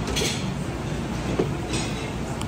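Steady din of a busy cafeteria serving line, with two light clicks about a second apart.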